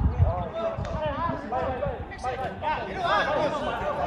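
Several voices shouting and calling out at once across a football pitch, overlapping calls from players and people at the touchline.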